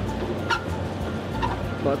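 A few short vocal sounds from a man over a steady low hum.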